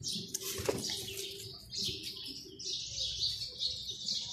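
Rabbits feeding on grass and dry leaves, giving repeated crisp rustling and light crunching with a few small clicks.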